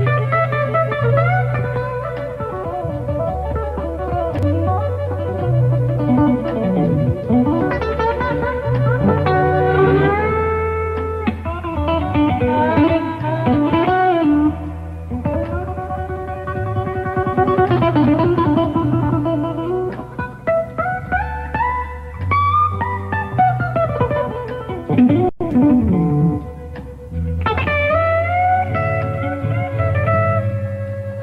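Electric blues band playing an instrumental break: a Stratocaster-style electric guitar plays a lead with bent notes over a walking bass line.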